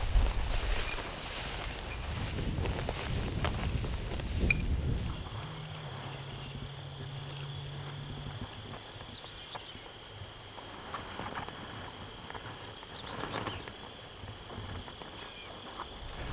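Steady chorus of insects, several high, even trills sounding together throughout. Low rumbling wind noise sits under it for the first few seconds and then dies away.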